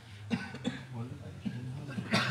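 Two short coughs close together, followed by low murmured voices, over a steady low hum in the room.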